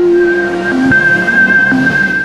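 Channel logo intro music: electronic sound design with held synth tones over a rushing noise, and a high held tone entering just after the start.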